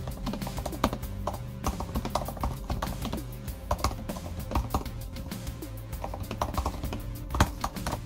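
Fingers typing quickly on a 2019 MacBook Air's low-travel butterfly-switch keyboard: a steady patter of soft, irregular key clicks, with background music underneath.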